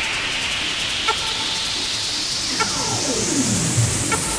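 Drumless breakdown in an electronic dance music mix: a noise sweep rises steadily in pitch, building tension. Short pitched blips sound about once every second and a half, one per bar, and a falling pitch glide comes in near the end.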